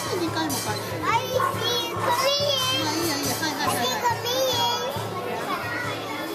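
Children's voices chattering and calling out in a busy room, with music in the background.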